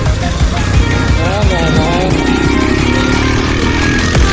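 Background electronic music with a wavering pitched line about a second in. A motorcycle engine runs underneath it.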